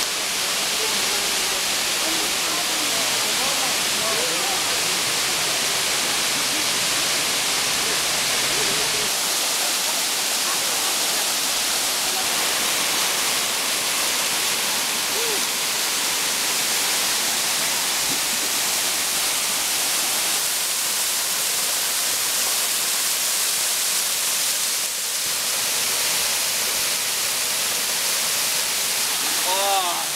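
Waterfall: a steady, loud rush of water pouring over a rock ledge and splashing onto the rock below. Its tone shifts a little about a third of the way through.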